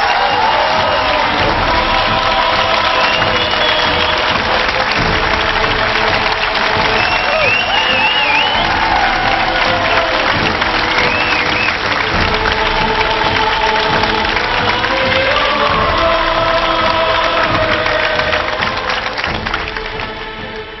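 Large arena audience applauding and cheering steadily over music, the applause dying down near the end.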